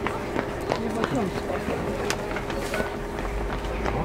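Indistinct chatter of people talking on a street, with scattered footsteps and a faint steady hum underneath.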